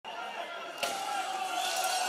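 Voices of a crowd, with one sharp bang about a second in as an object strikes the building's shattered glass front.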